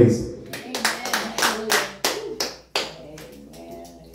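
A few people clapping irregularly, about three claps a second, with voices underneath; the clapping stops about three seconds in.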